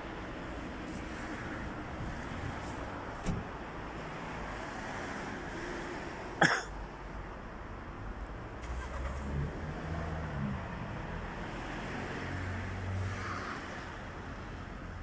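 Steady city street traffic noise, with a car engine running low and close in the second half. A single sharp click about halfway through stands out as the loudest sound, with a smaller click a few seconds earlier.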